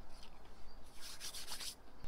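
Faint crinkling and rustling of a plastic Peeps marshmallow-candy package being picked up and handled, in a short cluster of crisp crackles about a second in.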